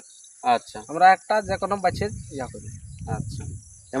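Steady high-pitched insect chirring, with quieter voices talking for the first half and a low rumble in the second half.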